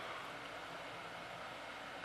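Faint steady hiss of room tone, with no distinct sound events.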